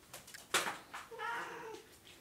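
A Siamese-type cat meows once, a short pitched call in the second half, after a sharp click about half a second in.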